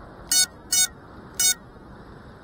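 Three short, high electronic beeps, unevenly spaced, over a steady hiss.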